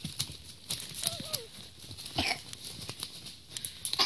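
Goats' hooves and a child's footsteps rustling and crunching through dry fallen leaves, a string of short irregular crackles. A short, faint falling call sounds about a second in.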